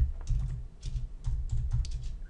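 Typing on a computer keyboard: an uneven run of key clicks with dull thuds beneath them as a short phrase is typed.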